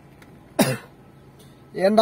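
A person coughing once, short and sharp, about half a second in, followed near the end by a voice starting to speak.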